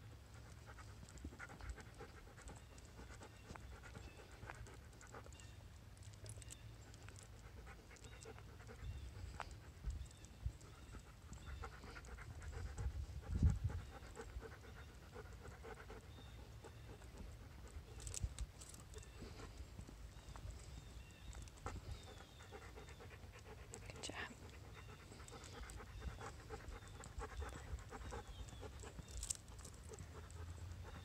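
A dog panting steadily, over a low rumble on the microphone, with a few scattered sharp clicks and one louder low thump about halfway through.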